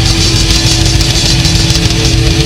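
Heavy metal band playing live: distorted electric guitar and bass hold a low, steady droning note over fast, busy drumming and cymbals.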